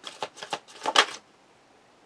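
A deck of tarot cards being shuffled by hand: a few quick card snaps over about a second, the loudest about a second in, then the shuffling stops.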